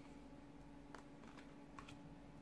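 Faint clicks and taps of tarot cards being set down and slid into place on a table, a few small ones about halfway through and a couple more near the end, over a faint steady hum.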